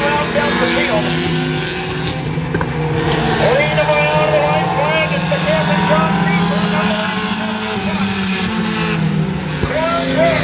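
A pack of pure stock race cars running laps on a short oval track, their engines a steady drone as they pass, with a voice talking over them.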